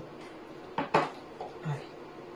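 Two quick clinks of a metal teaspoon against glassware about a second in, while cocoa powder is being spooned into a glass of warm water.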